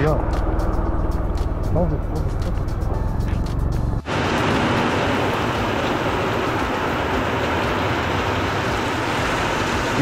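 Heavy rain, at first with wind buffeting the microphone and drops ticking on it while the motorcycle rides through the downpour. About four seconds in, a cut leads to the steady hiss of heavy rain falling on the road and roofs.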